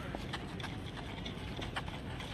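Footsteps of a group of people running and shuffling on dry dirt ground: many short, irregular, overlapping steps over a steady background noise.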